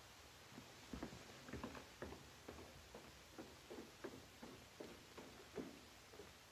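Faint, soft footsteps across a room, about two or three a second, starting about a second in.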